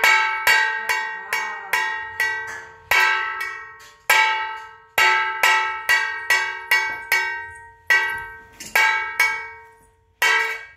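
Stainless steel plate struck over and over with a metal spoon, about two hits a second at an uneven pace. Each hit rings like a bell and fades before the next.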